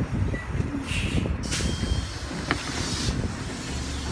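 City transit bus idling at a stop with a steady low engine rumble. A short hiss of released air comes about a second in, and a single click about halfway through.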